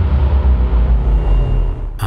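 Dramatic background score: a loud, deep low rumble held under a silent reaction shot, easing slightly near the end.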